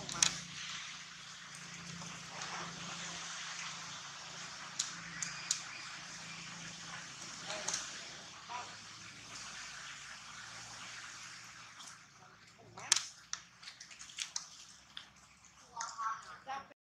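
Steady outdoor background hiss with scattered short crackles and rustles, like feet or bodies moving over dry leaf litter, and faint voices in the background.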